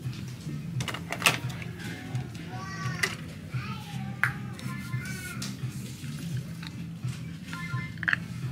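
Background music with a steady beat, with a high-pitched voice rising and falling twice in the middle. A few sharp clicks come from plastic body-wash bottles being handled.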